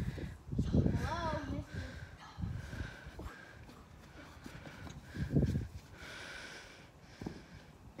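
Faint, distant children's voices outdoors, broken by a few low thumps, the strongest about five and a half seconds in.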